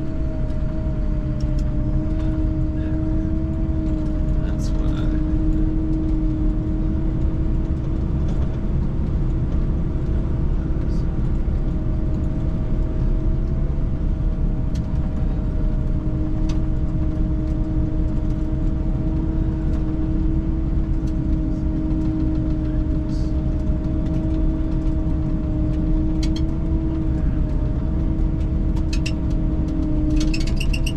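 A snowcat (piste groomer) running steadily while driving, heard from inside its cab. It gives a loud, even drone with a steady whine on top, and a few faint clicks and rattles here and there.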